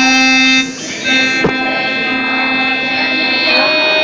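Casio electronic keyboard being played live in long held notes. The sound drops briefly just under a second in, then the held notes carry on, and a new note comes in near the end.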